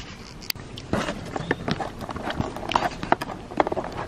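Handling noise as the camera is picked up and repositioned on a table: a string of irregular small knocks, taps and fingertip scrapes close to the microphone.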